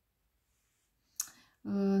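Near silence, then a single short click a little past halfway through, followed near the end by a woman beginning to speak.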